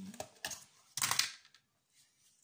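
Plastic lid being pried off a tub of butter: a few sharp clicks, then a louder crackling snap about a second in as the lid comes free.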